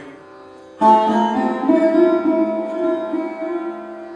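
Solo sarod phrase, a fragment of a traditional composition: a sharply plucked note about a second in, followed by a few more notes that ring on and slowly fade.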